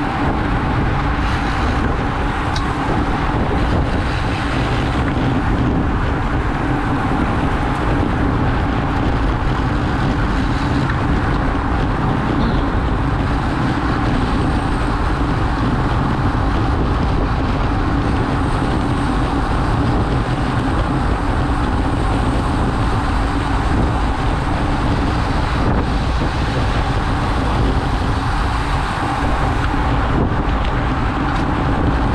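Steady, loud wind noise on a road bike's action-camera microphone at about 35 to 43 km/h, mixed with the rumble of tyres on the road.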